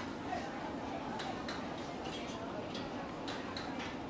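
Close-up eating sounds from a plate of fried stinky tofu: a string of small, irregular clicks, about a dozen, mostly in the second half, over steady background chatter.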